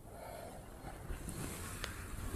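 Quiet room tone: a faint low rumble with one soft tick late on.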